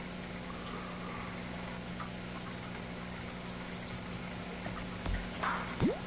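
Steady faint hiss with a low, even hum, with a low bump and a short rustle near the end.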